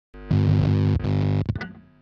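Distorted electric guitar playing two held chords, then a couple of quick stabs that die away near the end.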